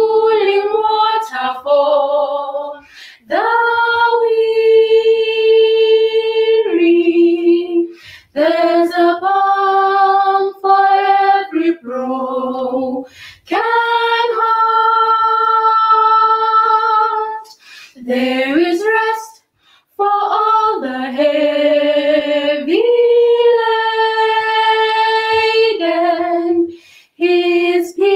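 Three female voices singing a cappella in harmony, holding long chords with short breaks between phrases.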